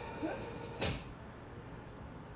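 A single sharp thud about a second in, a blow landing in the TV drama's muffled, dulled soundtrack. A thin high ringing tone cuts off at the moment of the thud.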